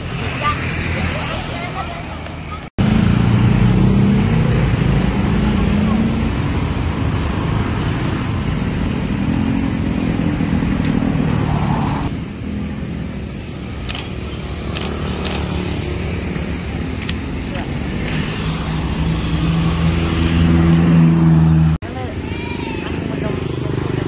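Road traffic: motor scooters and cars passing close by, their engine hum swelling and fading as they go past.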